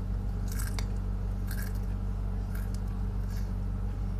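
Close-miked chewing of a crunchy cracker, with a crackly crunch about once a second, four in all. A steady low electrical hum runs underneath.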